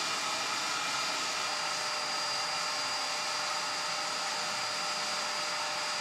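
IKAWA Home hot-air coffee roaster's fan running hard, blowing air through the roast chamber to cool the freshly roasted beans: a steady rushing with a faint high whine.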